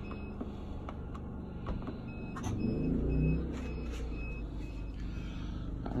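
Portable generator engine running steadily as a low hum, its note rising and falling briefly about two to three seconds in. A faint high electronic beep repeats several times in the background.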